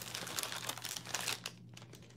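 Crinkly packaging being handled, a dense crackling rustle for about a second and a half that then thins to a few scattered crackles.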